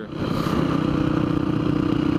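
Dirt bike engine running at a steady pitch while cruising down a paved road, with wind rushing over the helmet-mounted microphone.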